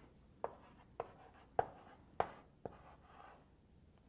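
Chalk writing on a blackboard: about five short, sharp taps of the chalk against the board, roughly one every half second, then a softer scratch of chalk a little after three seconds in.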